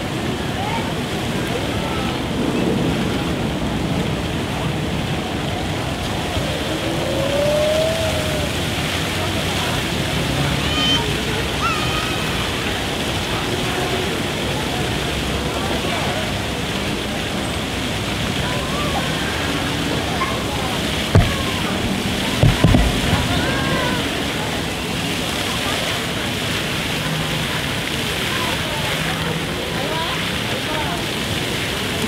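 Splash-pad fountain jets spraying water in a steady hiss, with children's voices and chatter around it. Two or three sharp thumps come about two-thirds of the way through.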